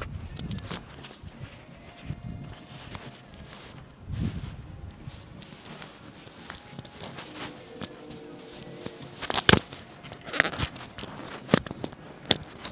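Close handling noise of a clip-on wireless microphone being fiddled with on a chest strap: fabric and fingers rubbing and fumbling, with a few sharp plastic clicks in the last few seconds.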